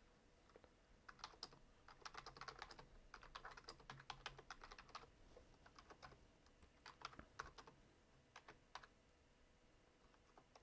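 Computer keyboard typing, faint: a dense run of keystrokes lasting about four seconds, then two short bursts of keys later on.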